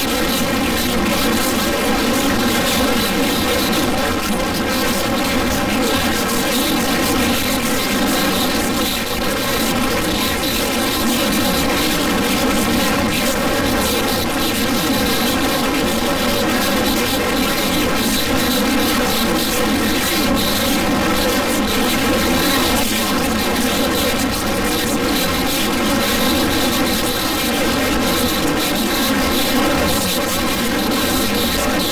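A loud, harsh, steady drone of many held tones over a noisy hiss, with no change in pitch or level.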